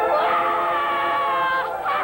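A boy's voice singing one long high note that falls slightly, then a short second phrase near the end, over sustained instrumental chords.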